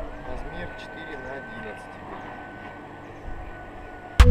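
Faint, indistinct voices over a low steady background hum, with a thin steady high whine running through.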